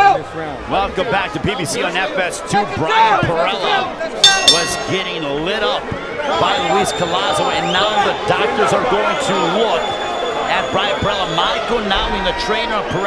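Indistinct voices and crowd noise in a boxing arena, many people talking over one another at once, with a brief clatter of sharp knocks about four seconds in.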